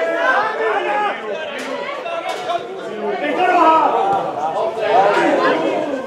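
Several spectators' voices talking and calling out at once, overlapping into a continuous chatter with no single clear speaker.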